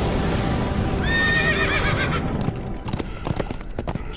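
Horse sound effect: a neigh about a second in, over a rumbling noise, then a run of hoofbeats clopping.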